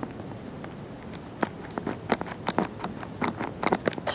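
Handling noise: irregular sharp clicks and taps as something is fumbled against the recording device, sparse at first and coming faster in the second half.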